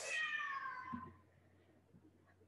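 A house cat meowing once, a single call of about a second that falls slightly in pitch.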